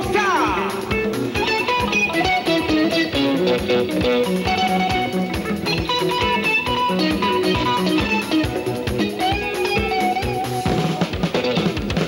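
Live Congolese band playing dance music: several electric guitar lines over bass and drums, with a steady beat.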